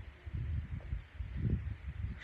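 Wind buffeting the microphone outdoors, a low uneven rumble that swells and fades.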